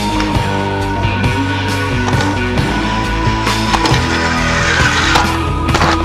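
Rock music soundtrack, with the rolling and sharp knocks of inline skates mixed over it: a few hard clacks about halfway through and again near the end.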